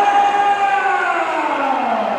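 A ring announcer's voice over the hall's PA system, drawing out one long shouted vowel: held on one pitch, then sliding down over about a second and a half before it ends.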